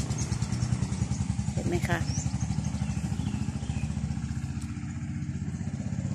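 A small engine idling steadily nearby, a low, even throb.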